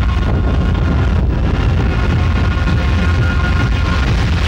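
Film background score: a loud, steady low drone with faint high notes held above it.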